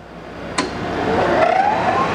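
Rush Model 380 drill grinder's 1 HP grinding-wheel motor switched on with a click about half a second in, then spinning up: a rising whine over a hum that grows steadily louder.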